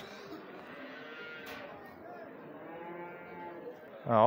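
Faint background hubbub of a crowded indoor livestock market, with distant voices and a drawn-out call from a farm animal.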